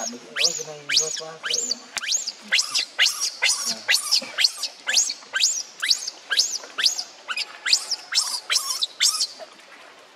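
Newborn macaque crying in distress: a long run of shrill, rising screams, about two or three a second. The cries stop shortly before the end.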